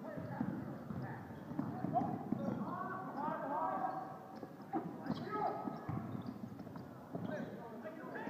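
Sound of a basketball game on a gym's hardwood court: repeated knocks of footsteps and bouncing ball, with sneakers squeaking in short bursts a few seconds in, over the murmur of crowd voices.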